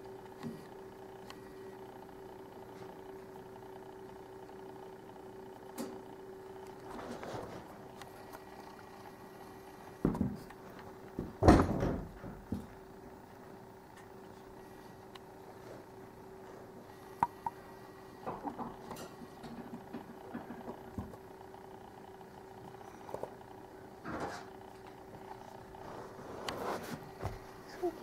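Quiet indoor room tone with a steady low hum, broken by scattered rustles and bumps, the loudest two about ten and eleven and a half seconds in.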